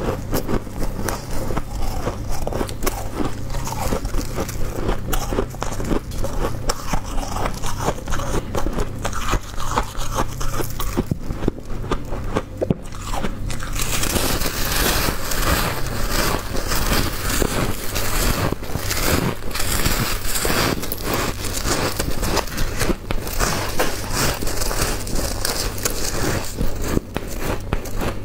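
Soft, powdery white ice being bitten off a block and chewed: a dense run of crisp crunches that goes on throughout and turns brighter and crisper about halfway through.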